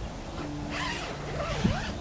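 Zipper on the fabric front door of a dome tent shelter being pulled open, in two quick pulls about a second in, the second ending in a short knock.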